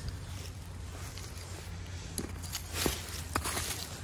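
Light rustling and a few small clicks and taps from movement and handling on gravel and dry leaves, over a steady low rumble.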